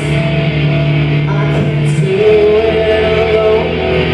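A live rock song played loud: a singer into a microphone over sustained held chords and a steady beat.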